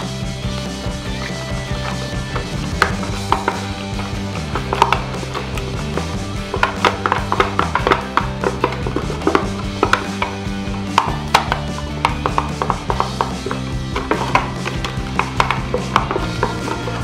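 Thin PET bottle plastic crinkling and clicking in irregular bursts as it is folded and creased by hand, over background music with a slow-moving bass line.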